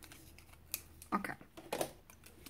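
Small scissors snipping thin cardstock: one sharp snip about a third of the way in, followed by two brief, softer handling sounds in the second half.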